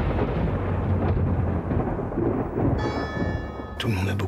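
Film-trailer sound design: a long, low, thunder-like rumble that slowly fades. About three seconds in, a few sustained musical tones come in.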